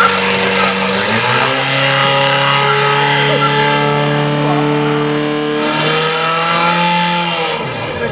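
Portable fire pump's engine running hard at high revs while it pumps water through the hoses. Its pitch drops about a second in and holds steady, then falls away near the end.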